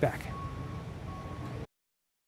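Outdoor street ambience, a low steady background noise, with a faint high beep sounding twice. The sound cuts off abruptly to silence near the end.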